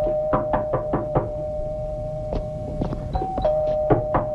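Knocking on a door: a quick run of about five raps, a few more later, and another run starting near the end, over a held, low two-note tone of suspense music.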